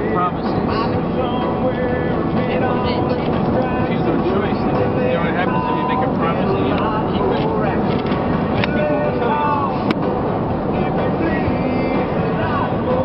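Country song with a singing voice playing from the car radio, over steady road and engine noise inside a moving car. There is a single sharp click about ten seconds in.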